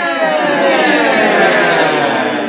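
Several voices together holding one long note that slowly slides down in pitch, a group vocal carried on from the cast's singing just before.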